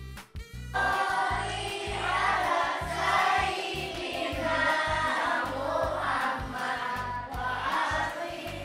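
A group of children singing together over a music backing track with a steady bass beat; the voices come in about a second in and carry on loudly.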